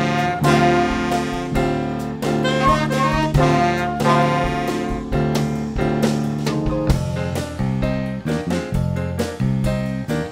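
Small jazz ensemble playing live, saxophones carrying the melody over bass, piano, guitar and drums. The horns hold long notes for most of it, then break into shorter, punchier phrases with sharper drum hits near the end.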